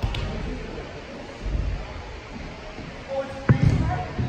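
Dull thumps of feet landing and pushing off on parkour boxes in a large echoing hall, the loudest about three and a half seconds in, with faint voices in the background.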